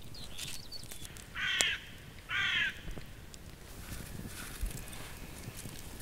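A crow-like bird cawing twice, two harsh calls about a second apart near the middle, over faint outdoor background.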